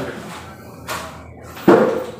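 Handling noises at a table as someone sits down to eat: a short brushing swish about a second in, then a sharp knock near the end, something set down or bumped against the table or chair.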